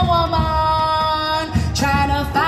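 Female vocalist singing a long held note through a PA, over live band music with drum and bass beats. The note slides slightly downward and breaks off about a second and a half in, and a new note begins just before the end.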